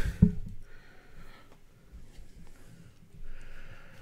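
Mostly quiet room with a faint click just after the start and a short breath through the nose about three seconds in.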